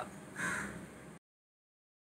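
A voice finishing a breathy spoken "ciao" sign-off, then the sound cuts off abruptly to complete silence a little over a second in.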